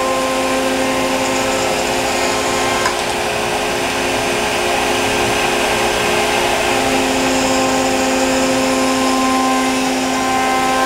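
CNC router spindle with a 1/4-inch single-flute end mill cutting 1/8-inch aluminum sheet: a steady spindle whine over a continuous cutting hiss, with one small tick about three seconds in.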